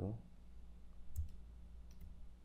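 A few light clicks of a computer mouse, about a second in and again near the end, over a low steady hum.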